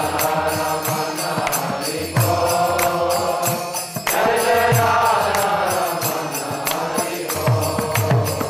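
Devotional kirtan: a man's voice chants a mantra in long, held phrases into a microphone, with steady drum strokes and small hand cymbals keeping time.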